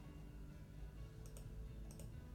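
Faint computer mouse clicks: a quick double click about a second and a quarter in and another near the end, over a low steady room hum.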